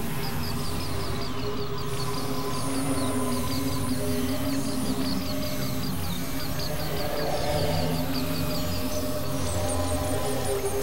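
Experimental synthesizer drone music from a Novation Supernova II and Korg microKorg XL: layered sustained low tones with a noisy, grainy texture. Over them runs a fast string of short high chirps, about four to five a second.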